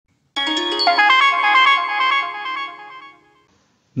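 Short electronic jingle: a quick run of bright, ringing synth notes that starts about a third of a second in and fades away by about three seconds.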